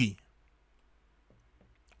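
A man's speech trails off, then near silence with a faint low hum and a few small clicks, until his voice starts again just before the end.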